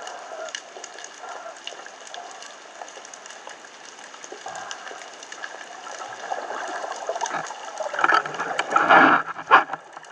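Underwater sound picked up by a camera mounted on a speargun: a constant fine crackling of many tiny clicks, with louder rushes of noise about eight and nine seconds in and a short sharp burst just after.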